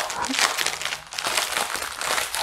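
Small clear plastic bag of diamond-painting drills crinkling as it is handled, a run of quick irregular crackles.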